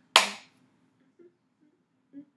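A single sharp hand clap just after the start, fading within half a second.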